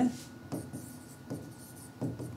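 Pen strokes on an interactive whiteboard as letters are written: a few short scratches and taps, about one every second, over a faint steady high hum.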